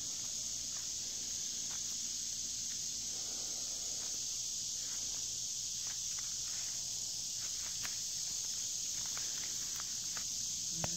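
Steady high-pitched chorus of insects, unbroken throughout, with a few faint ticks from footsteps through the grass.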